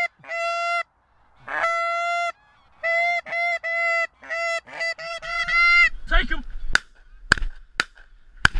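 Goose honks: a series of clear, even-pitched notes, each about half a second long, in broken runs. They are followed by a few sharp clicks near the end.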